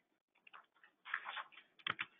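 Faint ticks and a soft rustle, then one sharp click near the end: a computer mouse click advancing the presentation slide.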